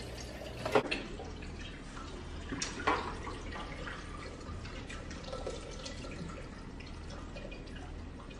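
Soda poured from cans into an ice-filled pitcher, a steady splashing stream of liquid. There are two short knocks, about a second in and about three seconds in.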